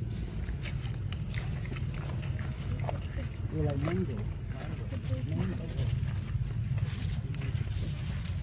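A macaque eating ripe mango close to the microphone, with many short wet smacking and chewing clicks. A few brief voice-like sounds come about halfway through, over a steady low rumble.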